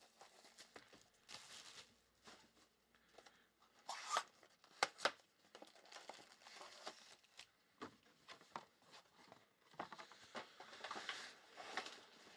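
Faint crinkling and tearing of plastic shrink-wrap and the handling of a cardboard trading-card box, with a few sharp clicks and taps about four to five seconds in.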